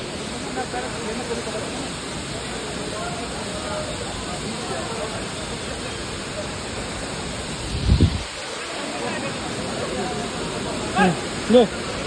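Steady rushing roar of a large waterfall close by, with people chattering over it. A low thump comes about eight seconds in, and two short voice calls come near the end.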